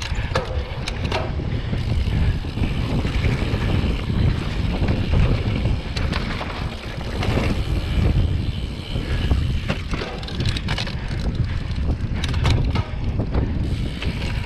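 Mountain bike ridden fast along dirt singletrack: wind buffeting the camera microphone over the rumble of the tyres on the dirt, with scattered clicks and rattles from the bike throughout.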